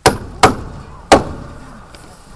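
Hand hammer striking a wooden lath that holds plastic film onto a greenhouse frame: three sharp blows within just over a second.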